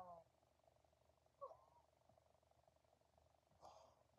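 Near silence: room tone with a faint steady hum, broken by the tail of a spoken word at the start, a short faint voice sound about a second and a half in, and a brief breath near the end.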